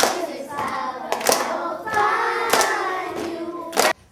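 A class of young children singing together, with four sharp hand claps evenly spaced about a second and a quarter apart.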